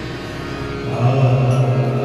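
Marathi abhang devotional music led by a harmonium holding long, steady notes, moving to a lower, louder note about a second in.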